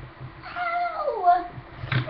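A young girl's high voice holding a short sung phrase that slides down in pitch partway through.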